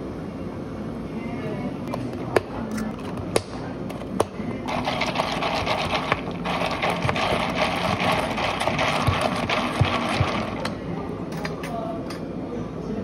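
Sparkling water poured over ice into a plastic cup of blue lemonade, with a few sharp clicks of ice cracking. Then, from about five seconds in to about ten seconds, close-up fizzing and crackling of carbonation bubbles in the drink, louder than the pour.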